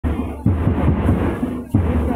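Lezim dance accompaniment: the metal jingles of many lezim sticks clashing together over heavy, deep drum beats, two of them in these two seconds.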